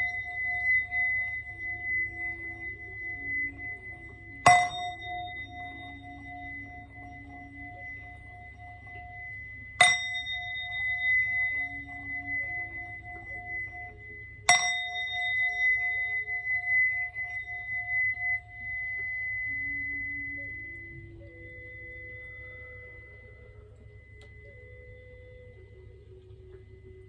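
Metal singing bowl struck with a wooden mallet to clear the energy before a tarot reading. It is struck three times about five seconds apart, and each strike rings on long with a low and a high tone together, slowly fading away near the end.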